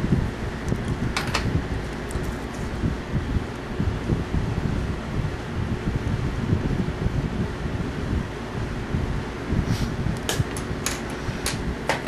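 Steady low rumbling background noise with a faint hum, broken by a few short clicks, most of them near the end.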